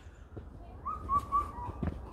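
A wild woodland bird's whistled call: a short rising note about a second in, then three short clear whistles at about the same pitch.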